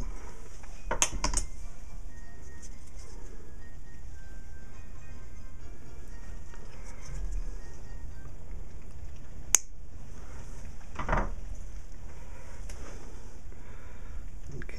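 Needle-nose pliers working fine steel music wire on a jeweler saw mandrel: a few small metal clicks and taps, the sharpest about nine and a half seconds in, over a steady background hiss and faint music.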